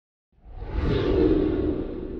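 Whoosh sound effect for an animated title intro: a rushing swell that rises quickly, peaks about a second in, then slowly fades.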